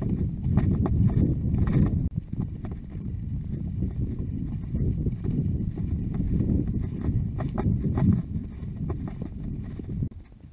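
A ridden horse's hoofbeats and movement, heard from the rider's camera, over a heavy low rumble, with scattered sharp clicks. The sound drops suddenly in loudness about two seconds in.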